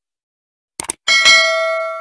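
Subscribe-button sound effect: a quick double mouse click, then a bright notification-bell ding that rings on and slowly fades.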